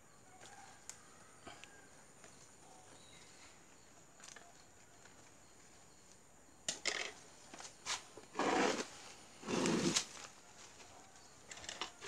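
Leafy kaca piring (gardenia) branches being handled and pushed aside, rustling in a few short bursts in the second half, the loudest about two-thirds of the way in, after a stretch of faint clicks.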